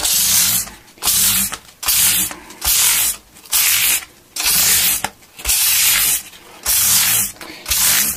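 600-grit sandpaper rubbed by hand along the frets of a guitar neck, in steady back-and-forth strokes of about one a second.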